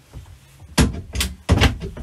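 Small wooden cabinet doors under a washbasin being opened and pushed shut: a quick series of sharp wooden knocks in the second half.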